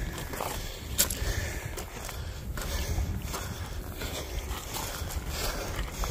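Footsteps scrambling up a loose gravel slope: irregular crunches of shoes on stones, with one sharper knock about a second in, over a steady low rumble on the phone's microphone.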